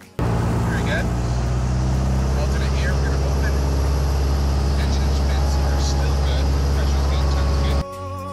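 Steady, loud drone of a light single-engine propeller airplane's engine heard from inside the cabin in flight, starting and cutting off abruptly. Faint voices sit underneath it.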